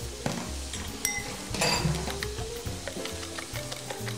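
A fork beating raw eggs in a glass bowl, with a few sharp clicks against the glass, over chicken thighs sizzling in a frying pan. Background music plays.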